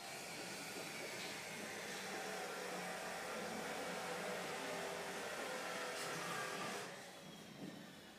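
A steady rushing noise with no pitch. It holds level for almost seven seconds, then drops away fairly suddenly about a second before the end.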